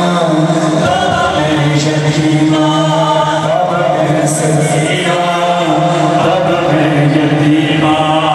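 Noha, a Shia mourning lament, chanted by a man into a microphone and played over the hall's loudspeakers, in long held, wavering notes.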